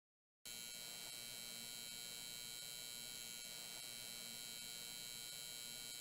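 Faint steady electrical hum with thin high-pitched whining tones, starting suddenly about half a second in after dead silence and holding level throughout.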